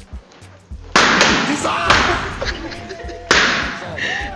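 Balloons bursting with a sudden loud bang, once about a second in and again near the end, each sound fading over a second or two, over background music with a steady low beat.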